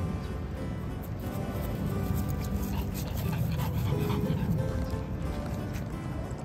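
Background music, with a Boston terrier's panting heard under it.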